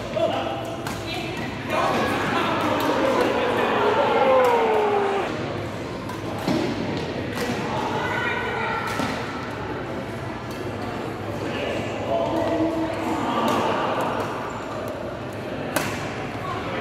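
Badminton rackets hitting a shuttlecock during a doubles rally, sharp pops at uneven intervals. Voices talk and call out, with the reverberation of a large sports hall.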